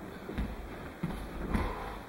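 Soft thumps of bare feet stepping on tatami-style mats, with the rustle of heavy cotton gi and hakama as attackers move in on a kneeling partner. There are three thumps, about half a second, one second and one and a half seconds in.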